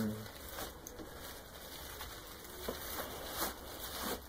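Faint rustling and crinkling of honeycomb die-cut kraft paper as it is wrapped by hand around an object, with a few soft, brief crackles.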